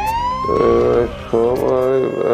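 An ambulance siren whose pitch rises over about the first second, followed by a wavering tone from about half a second in.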